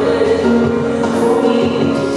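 A woman singing held notes while she accompanies herself on a Bösendorfer grand piano, performed live.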